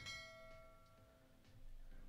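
A faint bell chime, the sound effect of a subscribe-button animation, struck once at the start and fading away over about a second.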